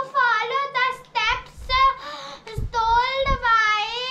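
A young girl's voice reciting in a high, sing-song way, with the syllables drawn out into long held notes in the second half.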